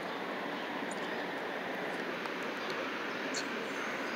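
Steady outdoor background noise, an even rushing hiss with no distinct events, and a few faint clicks.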